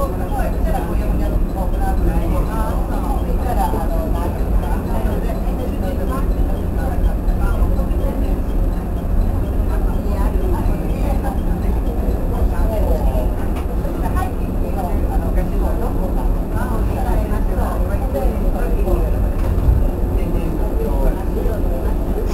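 Steady low drone and hum inside the cab of a JR West 103 series electric train standing at a station, with people's voices talking over it.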